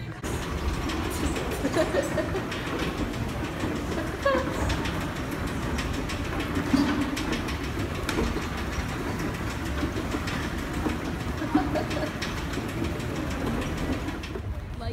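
Subway train running through an underground station: a steady rumble with clattering, echoing around the platforms and escalators.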